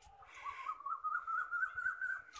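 A bird's single long whistled call, wavering slightly and slowly rising in pitch, then dropping away at the end.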